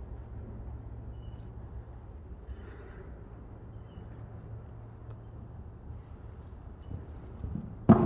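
Steady low background rumble, then near the end a horse's hoofbeats on arena sand close by, starting with one sudden loud thud.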